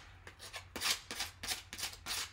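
Hand sanding: sandpaper rubbed in short, quick, irregular strokes along the edges of a white-painted wooden leaf cutout, distressing the paint for a rustic look.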